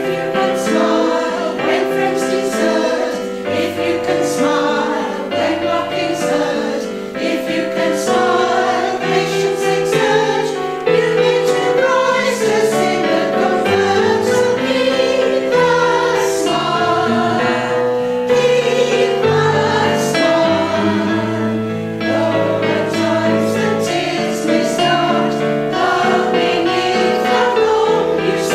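Women's choir singing a sacred song in harmony, several voice parts holding notes together.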